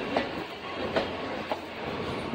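A train running past on the nearby tracks: a steady rumble with a few sharp clicks of the wheels over rail joints.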